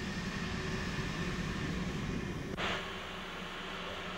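Steady hiss with a low hum from an old film soundtrack, with no distinct event; the hiss gets suddenly brighter about two-thirds of the way through, as at a splice.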